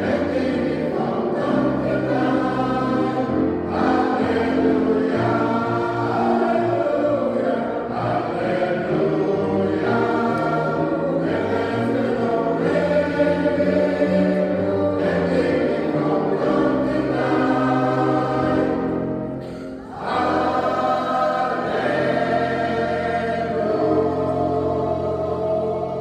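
Mixed choir of men's and women's voices singing in held, sustained chords, with a short break near the end before the next phrase starts.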